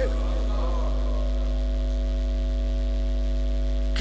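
Steady electrical mains hum from the microphone and sound system: a low hum with several higher steady tones above it, unchanging throughout.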